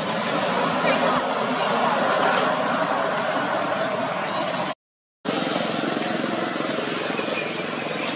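Steady outdoor background noise: a constant hiss with indistinct voices in it. It drops to dead silence for about half a second just under five seconds in.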